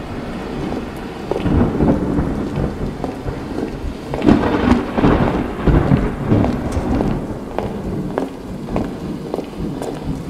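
Recorded rain-and-thunder sound effect played over a stage sound system: steady rain with repeated rumbles of thunder, the strongest swells about four to six seconds in.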